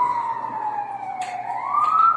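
A siren wailing: one high tone that falls slowly through the first second and a half, then rises again.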